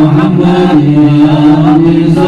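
A man chanting sholawat, an Arabic devotional song in praise of the Prophet Muhammad, in long held notes with slow turns of pitch.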